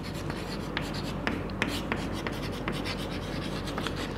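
Chalk writing on a blackboard: a run of short, irregular scratches and taps as a word is written out.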